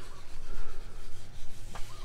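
Sandpaper rubbing on wooden cabinet doors as they are sanded, an uneven scratching over a low rumble.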